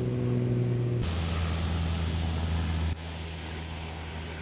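A steady low engine-like hum that jumps to a lower, stronger drone about a second in and turns quieter near the end.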